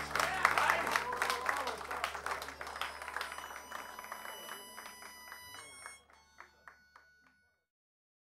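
Audience applause with scattered crowd voices at the end of a live rock song, over a steady low hum from the stage amplification and a few faint lingering keyboard tones. The whole fades out gradually to silence about seven seconds in.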